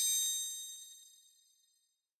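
A single bright metallic bell-like ding, struck once and ringing out, fading away over about a second and a half.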